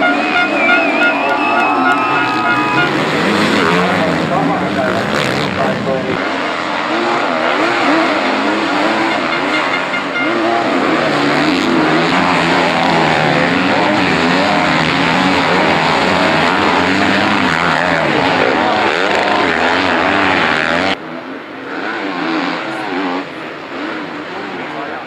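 Several enduro dirt bike engines revving, their pitch rising and falling with the throttle as the bikes climb and jump. About three quarters of the way through the sound drops suddenly and becomes quieter.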